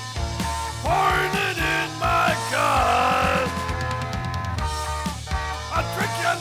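Rock band playing an instrumental stretch of a parody rock song, with drums and bass. A lead line slides and bends in pitch between about one and three and a half seconds in.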